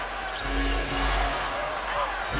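Arena crowd noise during live play in a basketball arena, with a basketball dribbled on the hardwood court and a low, pulsing hum from the arena's background sound.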